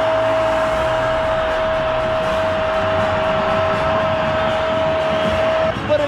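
A TV football commentator's long drawn-out goal call, a "gooool" held on one pitch for several seconds, over a cheering stadium crowd; the held note breaks off near the end.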